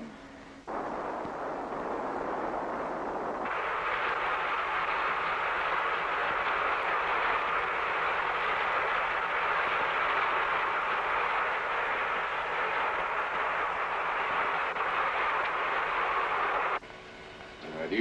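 Steady rushing noise of water streaming past a submerged submarine's hull. It starts about a second in, grows louder a few seconds later, and cuts off suddenly near the end.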